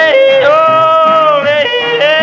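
Male country-blues yodel. The voice slides up into long held falsetto notes, breaking briefly between registers about halfway through and again near the end. A strummed acoustic guitar keeps a steady beat underneath.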